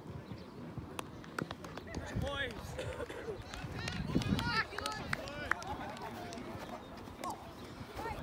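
Distant shouting and calls from rugby players and sideline spectators across an open field, overlapping and loudest in the middle, with scattered sharp clicks.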